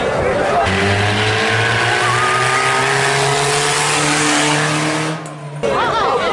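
A motor vehicle's engine running loudly and slowly climbing in pitch as it revs, starting abruptly about a second in and cutting off suddenly near the end.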